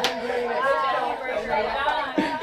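A group of people chattering over one another, several voices at once with no single clear speaker.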